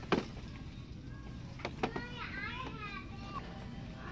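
A child's high voice in the background, a short run of rising and falling calls in the middle. A sharp click sounds right at the start and two more about a second and a half in, from plastic-windowed toy boxes being handled on their peg hooks.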